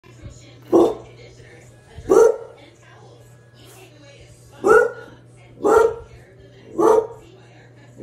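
A dog barking at a television: five single barks, irregularly spaced about one to two and a half seconds apart, over quieter TV sound.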